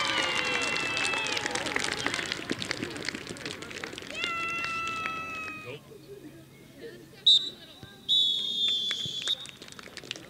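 High-pitched shouting and cheering voices celebrating a stoppage-time goal, with one long held call about four seconds in. Then a referee's whistle: a short blast about seven seconds in and a long blast about a second later, the full-time whistle.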